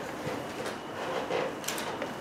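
Room hiss in a lecture room, with a few short clicks and rustles around the middle and near the end, like objects being handled or people shifting.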